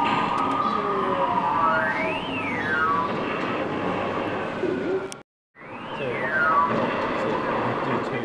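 Busy amusement-arcade din: electronic game sounds with beeping tones that sweep up and then down in pitch, over a general noise of machines and faint voices. The sound cuts out briefly about five seconds in, then resumes.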